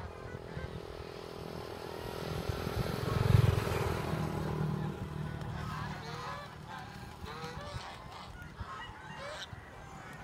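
Domestic geese on the water giving short, scattered honking calls, more of them in the second half. A passing engine swells to the loudest point about three seconds in and fades away by about five seconds.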